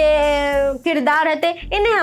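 A woman's voice drawing out one long vowel, falling slightly in pitch for almost a second, then going on speaking.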